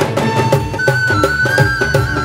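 Instrumental interlude of an Indian-style devotional song: hand drums keep a steady rhythm under a high melody line that holds long notes, with keyboard, sitar and electronic drum pads in the band.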